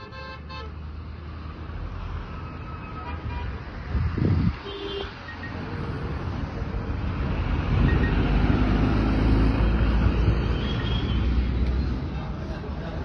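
Road traffic noise: vehicles going by with a low rumble, a short horn toot about four seconds in, and the traffic getting louder in the second half.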